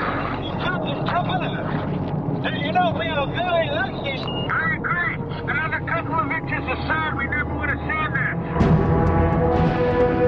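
Underwater burbling from scuba divers' exhaled bubbles, a busy run of short chirping sweeps. About eight and a half seconds in, sustained music comes in and takes over.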